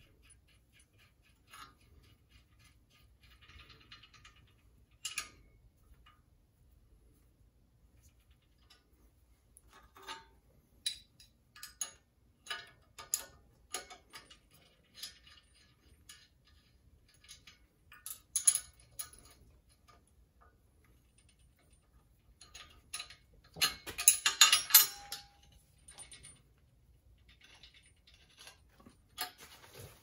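Small steel parts clicking and clinking as a nut is threaded onto a bolt held in a bench vise and turned with an open-end wrench: scattered sharp taps, busier in the middle, with a louder metallic rattle lasting a second or two late on.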